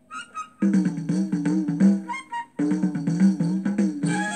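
Instrumental passage of a 1969 Hindi film song, played from an LP. After a moment's pause a short high phrase comes in, then a rhythmic instrumental accompaniment with a steady beat, breaking off briefly about two and a half seconds in before going on.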